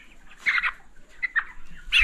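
Broiler chickens calling in the poultry house: one short loud call about half a second in, then a few fainter calls.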